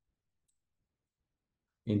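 Near silence with a single faint click about half a second in, then a man's voice starts right at the end.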